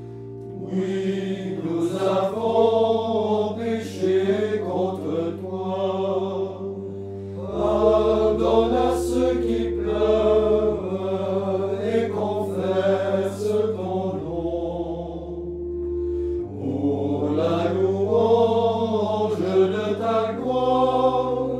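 A small choir of men chanting a French liturgical chant together, in phrases of several seconds, over steady low held notes that shift every few seconds.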